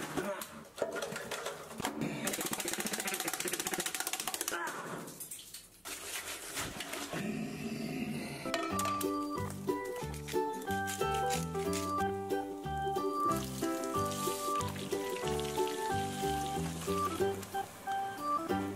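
A toilet cistern flushing: a rush of water lasting a couple of seconds. Then background music with a melody of held notes.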